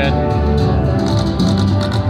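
Music from an IGT Golden Rose video slot machine, playing steadily with sustained low notes while its reels spin and stop.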